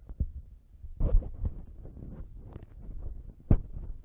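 Low thumps and rustling close to the microphone, with a louder cluster about a second in and a sharp click about three and a half seconds in: handling or movement noise rather than speech.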